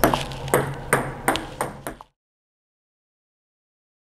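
Table tennis ball clicking off a racket and bouncing on the table during forehand drop shots, about five sharp taps in two seconds. The sound then cuts off to silence about two seconds in.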